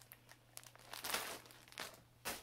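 Clear plastic bag of yarn crinkling as it is handled, in a few short, uneven rustles.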